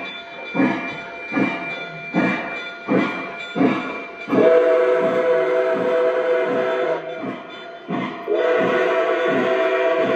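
Onboard sound system of a Lionel Legacy #765 Nickel Plate Road Berkshire O scale steam locomotive running: steady steam chuffs a little more than one a second, with a chime whistle blown in a long blast about four seconds in and again near the end.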